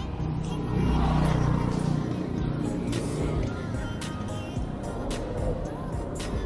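Background music with a steady beat over road and traffic noise, with a vehicle sound swelling about one to two seconds in.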